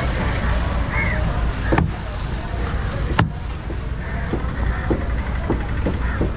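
Curved cleaver chopping fish into chunks on a wooden board: two sharp chops a little over a second apart, then several lighter knocks, over a steady low rumble of traffic.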